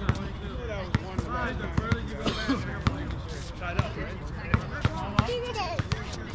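A basketball bouncing on an outdoor hard court, sharp bounces about once a second that come a little faster near the end, with players' voices and calls in the background.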